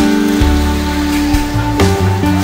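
Background music: a mellow instrumental groove with held chords over a bass line that changes notes, and a sharp percussive hit near the end.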